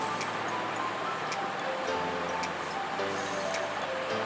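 Instrumental background music: a light melody of short, changing notes over a soft beat with ticking percussion.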